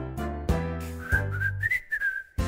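Bouncy background music with a steady beat; about halfway through, a short whistled tune comes in over it.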